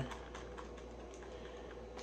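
Faint, scattered light clicks and taps from a small cardboard product box being handled, over a steady low hum.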